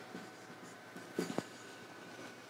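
Marker writing on a whiteboard: faint short strokes, with a small cluster of them a little over a second in.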